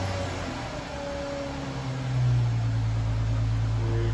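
Chrysler 300 engine idling just after being started, a steady hum with hiss heard from behind the car. A low steady drone grows louder about two seconds in.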